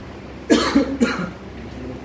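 A person coughing three times in quick succession, about half a second in.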